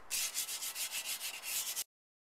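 Fired stoneware pots being sanded straight out of the kiln, as part of finishing them. Quick, even back-and-forth rasping strokes that cut off abruptly near the end.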